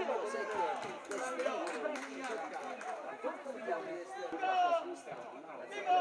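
Several voices talking and calling out over one another, words indistinct.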